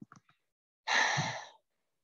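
A few faint clicks, then one breathy sigh lasting under a second, about a second in.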